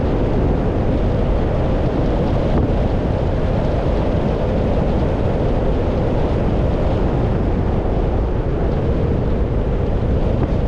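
Steady road noise of a car driving: a low, even rumble of tyres and wind that holds constant without rises or breaks.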